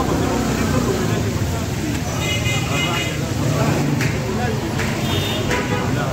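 Busy stall ambience: background voices and a steady traffic hum, with a few sharp metallic clanks of a metal spatula against a large iron frying pan in the second half.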